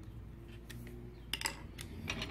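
Light clicks and taps of hands handling metal sewing-machine parts, with two sharper clicks about a second and a half in, over a faint low hum.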